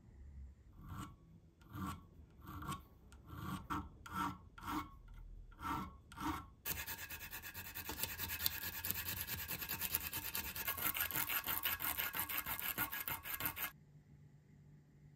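Hand sanding a small metal wing screw held in a vise: about eight slow, separate scraping strokes, then quick steady back-and-forth strokes with a strip of sandpaper from about halfway, stopping suddenly just before the end.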